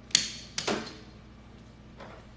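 PVC drain pipe and fitting being dry-fitted: a sharp plastic click, then a short plastic scrape about half a second later as the pipe is pushed into and worked against the fitting.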